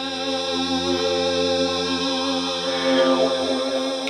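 Great Island Mouthbow sounding a steady low drone with a ringing stack of overtones. About three seconds in, the overtones sweep up and down as the player's mouth reshapes them.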